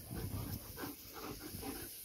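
German Shepherd panting in short, quick breaths, fairly quiet.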